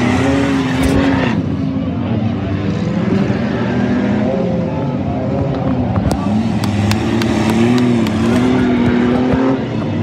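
Several stock-car engines running together on a dirt figure-8 track, revving up and down so their pitch rises and falls, with a few sharp clicks between about six and nine seconds in.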